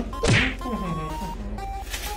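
A single sharp whack with a short rising swish about a third of a second in, most likely an editor's comic hit sound effect, over light background music with a simple melody.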